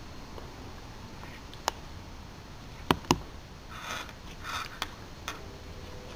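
Quiet room hum with a few small, sharp clicks and taps from handling a plastic subcutaneous infusion needle set and its tubing: one about two seconds in, a pair around three seconds and two more near the end. There are two soft hisses in between.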